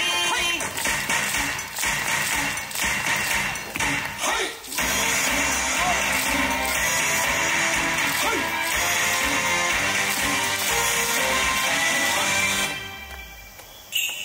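Yosakoi dance music playing loudly, with sharp percussive hits during the first few seconds. The music drops away to a much quieter pause a little over a second before the end.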